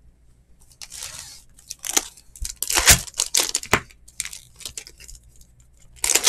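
Foil wrapper of a Bowman Chrome baseball card pack being torn open and crinkled by hand: a rustle about a second in, then several short sharp rips between two and four seconds.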